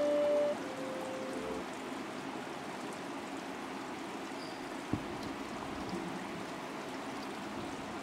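A sustained musical chord fades out in the first second and a half, leaving a steady hiss of room and sound-system noise with a single soft click about five seconds in.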